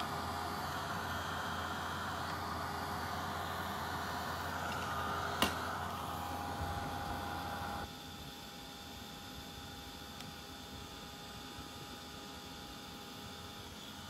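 Handheld embossing heat tool blowing steadily as it melts embossing powder on a metal frame. A single click about five seconds in, and the blowing drops to a fainter steady hiss about eight seconds in.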